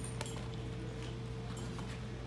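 A steady low hum fills the room, with a few faint clicks and taps as a sneaker is laced onto a prosthetic foot.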